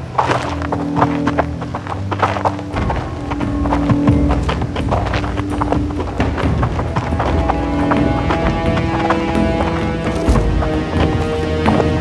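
Dramatic background music with held tones, over a string of irregular clopping knocks.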